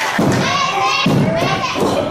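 Two slaps on the wrestling ring mat about a second apart as the referee counts a pinfall, with shouted voices calling the count along. The pin is broken before a three count.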